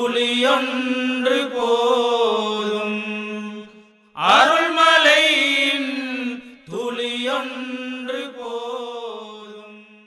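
Devotional chant-style singing of a Tamil Islamic mawlid song in three long, drawn-out phrases. The last phrase fades out at the song's end.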